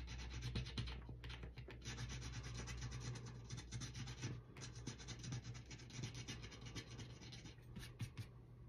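Rapid, faint scratching and rubbing on a small paper scratch-off card as its coating is scraped away, with brief pauses about a second in and again past the middle.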